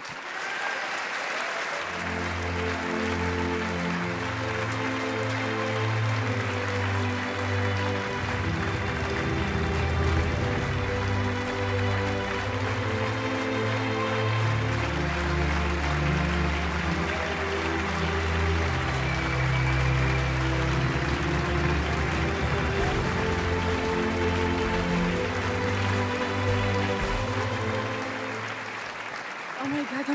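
Audience applauding over background music of sustained low chords; the music fades out near the end.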